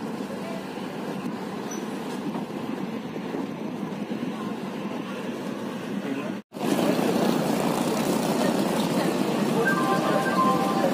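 Steady running noise of a moving passenger train, heard from inside the coach as it rolls through the yard. About six and a half seconds in, a sudden cut brings the louder, steady hubbub of a busy station platform with people's voices.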